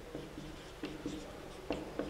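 Marker pen writing on a whiteboard: a few short, faint strokes and taps as a term of an equation is written out.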